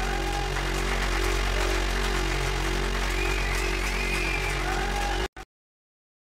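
Electronic synth music: a sustained low bass drone with warbling synth tones above it, which cuts off abruptly near the end, leaving dead silence.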